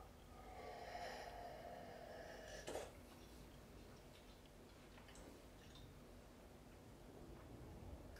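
A faint sip of coffee from a mug, drawn in for about two seconds, then a short soft click.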